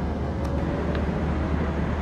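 Steady outdoor background noise: a low rumble with an even hiss above it and no distinct event.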